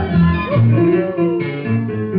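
Tango music playing, with a pulsing bass line under a melody whose notes slide up and down in pitch.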